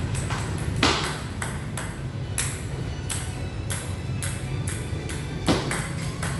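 Table tennis ball clicking off the bat and bouncing on the table in quick succession during serve practice, roughly two to three sharp clicks a second. Two louder knocks come about a second in and near the end.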